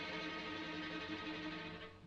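Film background score of held string chords, violins sustaining steady notes.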